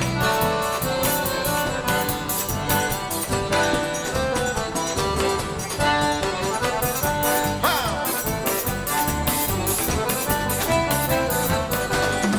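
Live forró band playing instrumentally: a piano accordion carries the melody over a triangle and drum kit keeping a steady quick beat.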